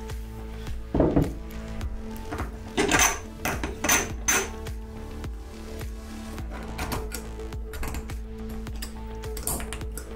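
Steel spacer and cutter-block parts clinking against the tooling arbour as they are fitted by hand, with several sharp metal clicks in the first half, over a quiet background music bed.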